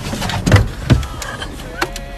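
Truck engine idling in the cab with two loud thumps, about half a second and a second in, as a body knocks against the door and seat while leaning out through the driver's window; a brief voice near the end.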